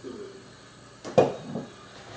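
A single sharp knock about a second in as a glass Tapatio hot-sauce bottle is set down on a wooden counter.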